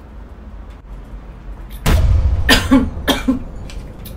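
A woman coughing several times in quick succession after a sip of bottled water. The coughs start suddenly about two seconds in, after a quiet opening.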